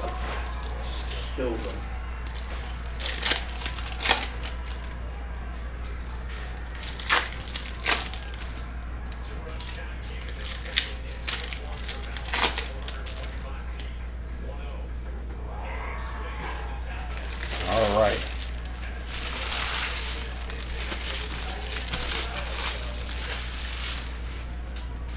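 Wrappers of Bowman University Chrome trading-card packs crinkling and tearing as the packs are opened, with sharp crackles every few seconds. A voice speaks briefly about two-thirds through, over a steady low hum.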